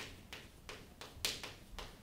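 Chalk writing on a chalkboard: a series of short taps and scratches as each letter is stroked, the loudest about a second and a quarter in.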